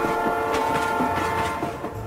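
Freight train horn sounding one steady chord of several tones over the noise of the passing train, fading away near the end.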